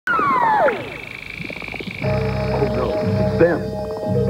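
Eerie electronic soundtrack music and effects from an animated film: falling synth sweeps at the start, then about halfway in a low throbbing pulse under steady held tones.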